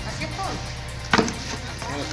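A single sharp knock about a second in, from pieces of bone and meat being handled in a plastic tub, over a steady low hum.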